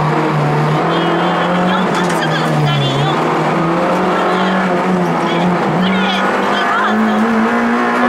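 Honda Integra Type R (DC2) rally car's 1.8-litre four-cylinder VTEC engine pulling at high revs, heard from inside the stripped cabin, its pitch dipping briefly and then rising again as the driver works the throttle through the bends.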